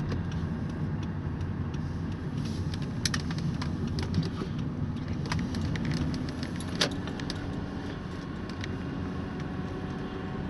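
Inside a moving car's cabin: a steady low rumble of engine and road noise while driving, with scattered small clicks and rattles, the sharpest about three and seven seconds in.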